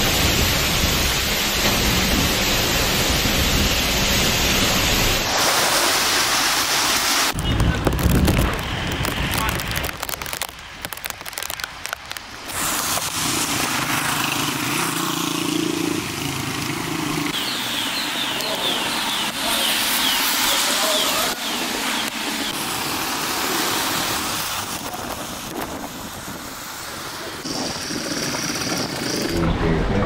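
Loud storm wind and rain from hurricane footage, in a run of short clips whose sound changes at each cut, with people's voices at times.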